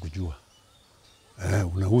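Speech only: a man talking, with a pause of about a second in the middle.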